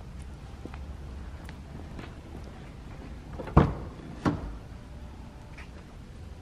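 Infiniti Q60 coupe door being opened: two sharp knocks about three and a half and four and a quarter seconds in, as the latch releases and the door swings open. A low steady rumble runs underneath.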